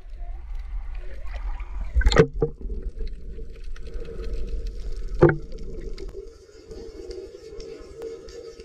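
Sea water sloshing and splashing against a camera at the surface, over a steady low rumble, with two sharp splashes about two and five seconds in, the second the loudest. After that the sound turns muffled and steady as the camera is underwater.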